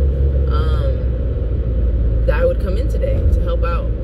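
Steady low rumble of road and engine noise inside a moving car's cabin, with a woman talking over it in short bursts.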